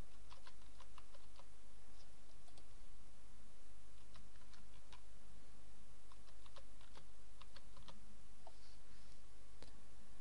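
Computer keyboard being typed on as a password is entered, in irregular runs of sharp key clicks over a steady low hum.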